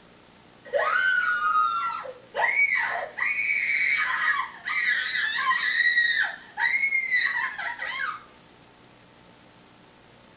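A person screaming, about five long high-pitched screams in quick succession that stop about eight seconds in, played from a video over the room's speakers.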